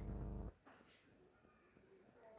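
A low, steady hum that cuts off abruptly about half a second in, followed by silence.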